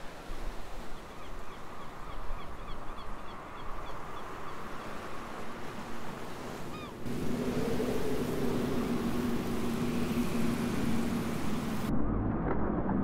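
Sea waves washing, with a few faint bird calls in the first half. About seven seconds in, the sound gets louder and a steady low drone joins the waves.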